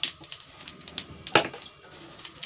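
Cumin seeds crackling in hot oil in a steel wok: scattered sharp pops, the loudest a little past halfway.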